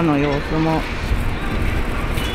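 A voice speaking briefly at the start, then a low, steady outdoor rumble.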